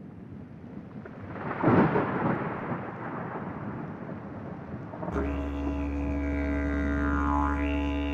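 Opening of a short film's soundtrack on the room's speakers. A rushing swell of noise peaks loudly about two seconds in and then eases off. About five seconds in, it gives way abruptly to a low musical drone whose overtones sweep up and down.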